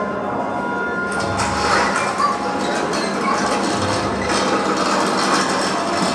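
Sheet metal being pulled and torn off a scrapped caravan, clanking and rattling with many small knocks from about a second in, heard as a film soundtrack played back in a room.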